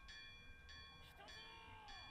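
Near silence, with a few faint high bell-like tones sounding together, breaking off and coming back twice.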